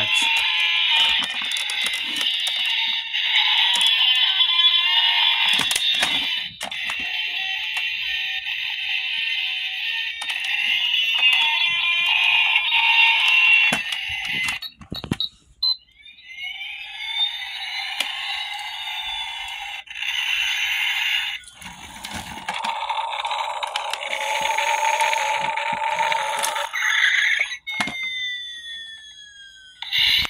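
Road Rippers Maximum Boost toy car's electronic sound effects playing through its small speaker, tinny with no low end, while the toy runs on low batteries. A long stretch of dense electronic sound breaks off about halfway. It then returns as sweeping rising and falling tones, and a falling whistle comes near the end.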